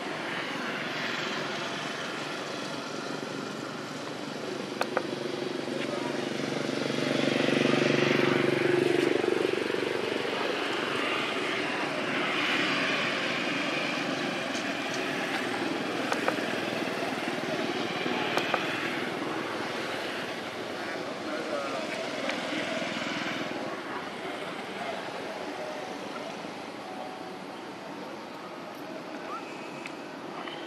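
A distant engine drone, likely a propeller aircraft, swells to its loudest about eight seconds in and then fades. It sits over steady outdoor background noise, with a few faint clicks.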